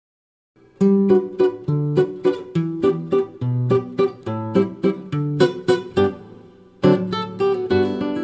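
Solo classical guitar played fingerstyle: a waltz in plucked bass notes and melody. It starts just under a second in, lets a chord ring out and die away near six seconds, then resumes just before seven seconds.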